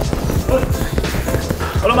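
Boxing gloves striking heavy punching bags in quick, irregular thuds, several bags being hit at once, over background music with a steady bass.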